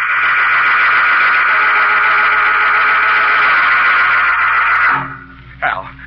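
A radio-drama musical bridge: a loud sustained organ chord held steady, cutting off about five seconds in.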